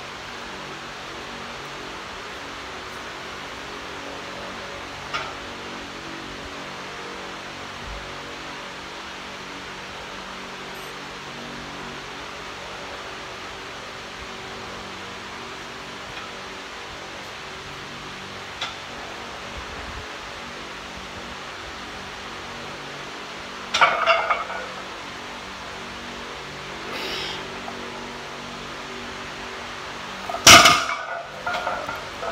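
Steady hiss and low hum of room tone, with a few faint clicks. About 24 seconds in there is a short, louder clatter of about a second as a heavily loaded barbell is deadlifted off the floor, and a smaller one a few seconds later.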